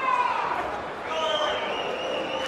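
A man's voice over arena crowd noise at a boxing match, with a drawn-out call from about a second in.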